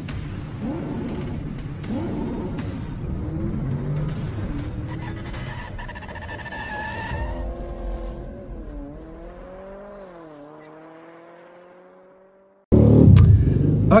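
Intro sound effects of a car engine revving up and down over music, with sharp hits and a high squeal partway through. The engine sound drops, rises once more and fades out about twelve seconds in, followed by a sudden loud burst of noise just before a man says "Oke".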